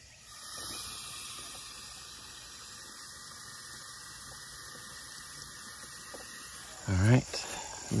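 A steady, high-pitched chorus of insects chirring in the pasture, with a short spoken word near the end.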